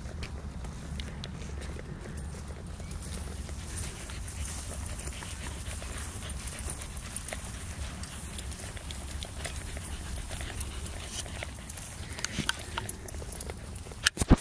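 A Pembroke Welsh Corgi panting after a run, already tiring, over a steady low rumble on the microphone.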